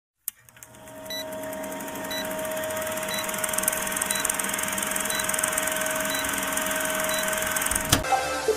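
Old-film countdown sound effect: a film projector running with a steady whirr and a short high beep once a second, fading in over the first few seconds.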